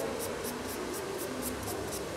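Nail file rasping back and forth across a fingernail during a manicure, in quick even strokes of about four a second.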